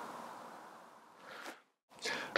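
Near silence: faint room hiss fading away, a brief soft faint sound about one and a half seconds in, then dead silence.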